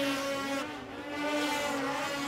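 Race snowmobile engines running in the background, one holding a steady pitch while another drops and rises in pitch as it revs in the middle.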